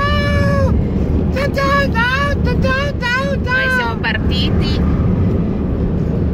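Steady low road and engine rumble inside a car's cabin, with a high voice calling out in drawn-out, sing-song tones over it during the first four seconds.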